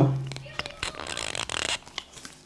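Side cutters nipping and pulling the plastic insulation off the cores of an alarm cable: a few faint clicks and a light scrape.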